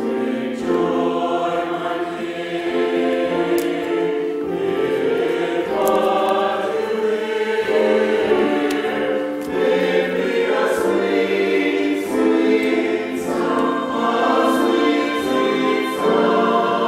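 Mixed choir of men's and women's voices singing a choral piece in long held notes, phrase after phrase, with brief breaths between phrases.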